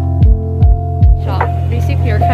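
Background music: a held low synth bass chord with three deep kick-drum hits about 0.4 s apart, then a voice coming in about halfway through.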